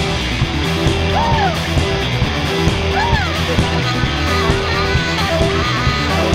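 Punk rock band playing live through an instrumental passage: steady drums, bass and electric guitar, with two short swooping notes that rise and fall over the top.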